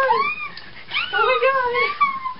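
Girls screaming in high-pitched, wavering cries: a short one at the start and a longer, drawn-out one about a second in.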